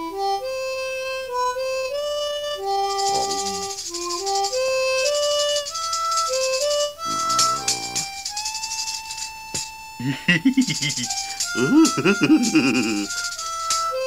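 A harmonica playing a simple tune note by note. About three seconds in, a tambourine joins, shaken in rapid jingles, and a long held note follows. Voice-like cries break in near the end.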